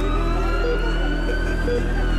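An emergency siren wailing in one slow sweep, rising in pitch and peaking near the end, over a steady background music bed.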